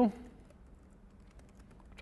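Faint typing on a computer keyboard, a scatter of light keystrokes.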